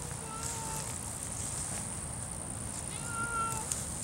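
Savannah cat meowing twice, short calls of about half a second, one at the start and another about three seconds in.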